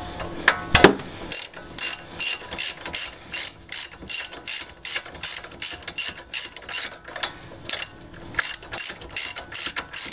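A hand socket ratchet clicks in quick repeated strokes, about three a second, as it backs out a loosened front brake caliper bolt. There is a brief pause about seven seconds in. A single knock comes about a second in.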